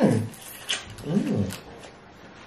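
Two appreciative "mmm" hums from a person eating, the first falling in pitch at the start and the second rising then falling about a second in, with a few mouth clicks from chewing between them.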